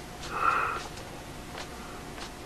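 A single short sniff, a breath drawn sharply through the nose, about half a second in, over quiet room tone.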